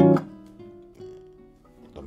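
Nylon-string classical guitar: a chord struck at the start rings and dies away, with a quieter single note about a second in. It is one of the chords of a waltz accompaniment in E-flat minor being demonstrated.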